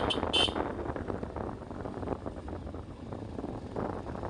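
Motorcycle running along a road with wind rushing over the microphone, and two short horn beeps in the first half-second.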